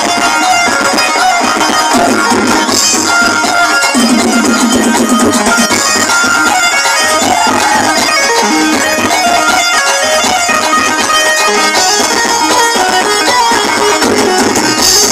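Loud, continuous DJ dance music from a sound system, with several melodic lines running together.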